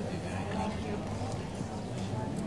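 Faint, indistinct talk over a steady low hum.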